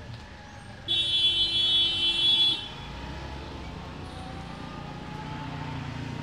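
A vehicle horn sounds once, a steady pitched blast lasting about a second and a half that cuts off sharply, over the low rumble of street traffic, which grows a little in the second half.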